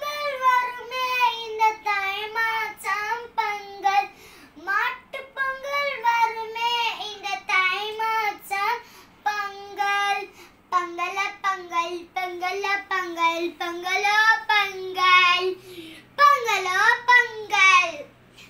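A young girl singing a Pongal song solo and unaccompanied, in phrases with short breaks between them.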